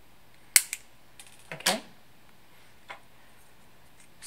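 Flush cutters snipping off the excess of a plastic cross-shaped servo arm: a sharp snap about half a second in, followed by a smaller click. A brief clatter comes a second later, with a faint click near the end.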